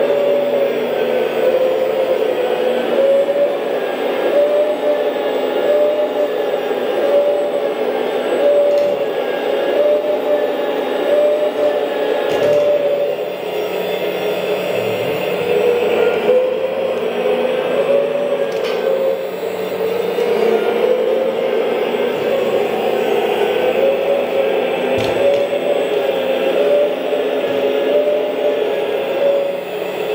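Hydraulic pump of a Huina (Kabolite) K970 1/14 scale RC excavator running continuously: a steady whine whose pitch dips and rises as the boom, arm and bucket are worked.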